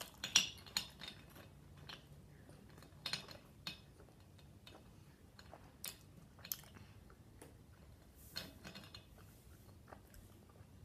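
Hard gumballs clacking against one another and the dish as a hand rummages through the pile: irregular short clicks, the sharpest just after the start and a cluster around three seconds in.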